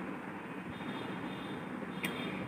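Steady background noise with no speech, a low hum and hiss of room or street ambience. A faint high tone comes in just under a second in.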